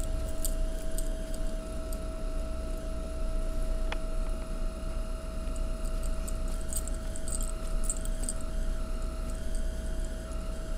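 Light metallic jingling of a gold charm bracelet's dangling charms, scattered small clinks that come more often in the second half, over a steady low hum with a constant tone.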